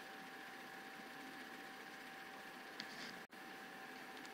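Near silence: faint room hiss with a thin steady hum, and one faint click a little before three seconds in.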